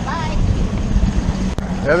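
Outboard motor running with a steady hum while the boat is under way, with wind buffeting the microphone.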